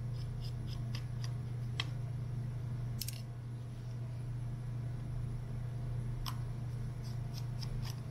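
Light, scattered metallic clicks of a precision Phillips screwdriver turning a tiny 1.5 mm screw out of a MiniDisc player's metal back cover. The clicks are sharpest around two, three and six seconds in, over a steady low hum.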